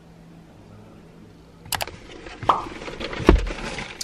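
Quiet room tone with a faint steady hum, then, after about a second and a half, irregular clicks, knocks and rustles of a camera being handled inside a car, with one heavy low thump near the end.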